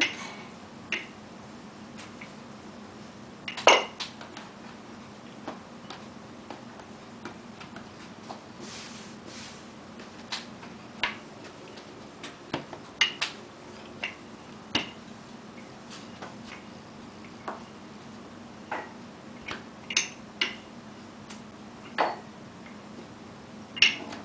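Wooden rolling pin rolling dough on a countertop, with scattered wooden clicks and knocks as the pin and its handles are set down, lifted and shifted. The loudest knock comes about four seconds in, over a steady low hum.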